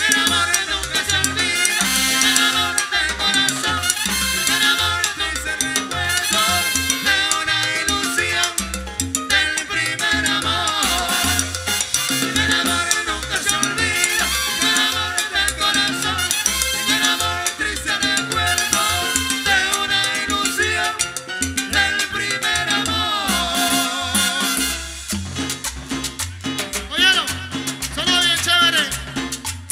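Live Latin dance orchestra playing at full volume: trombone and saxophone lines over bass and percussion, in a steady dance rhythm.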